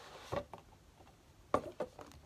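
Paperback books being handled and pulled from a cardboard box set: a soft knock about a third of a second in, then two more close together near the end.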